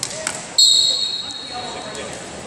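A referee's whistle blown once: a short, high, shrill blast that fades, signalling the wrestlers to resume. A couple of light knocks come just before it.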